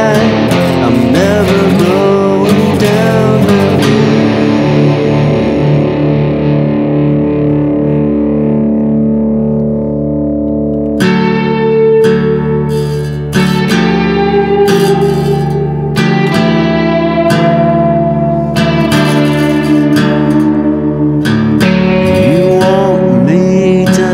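Guitar-led passage of a raw acoustic sludge-folk song: a chord rings and slowly fades, then strummed guitar chords come back in about eleven seconds in, roughly one every second and a half.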